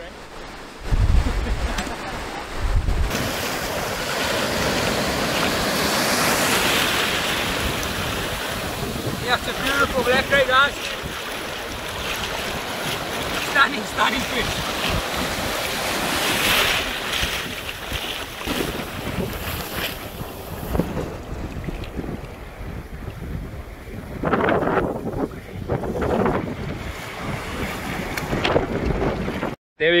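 Surf breaking and washing through the shallows, with wind buffeting the microphone, heaviest in the first few seconds.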